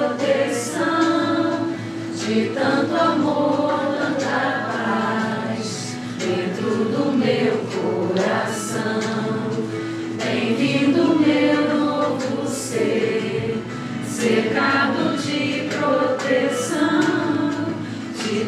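A song sung by a choir of voices, the words carried on a sustained, continuous melody.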